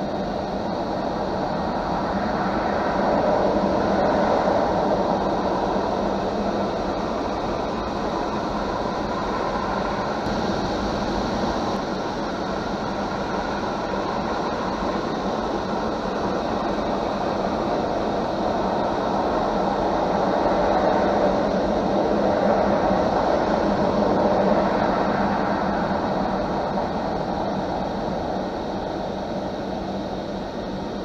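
Automatic car-wash cloth brushes rotating and scrubbing against the car body, heard from inside the cabin as a steady, muffled rushing noise over a low hum. It swells twice, a few seconds in and again past the middle, as the brushes pass along the car.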